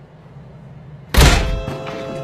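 A single loud, heavy thunk a little over a second in, dying away over about half a second, followed by held musical tones.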